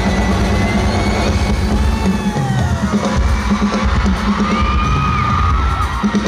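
Live band music played loud with a drum kit and heavy bass, heard from the audience, with fans' high screams rising and falling over it.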